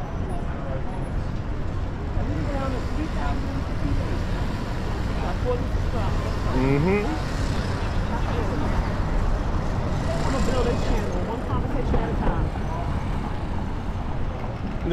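Busy city street ambience: steady traffic noise with snatches of passers-by talking.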